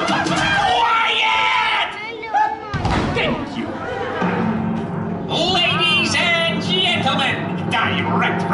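Live stage-show sound over a large hall's sound system: music with a performer's amplified voice. There is a single thump about two and a half seconds in.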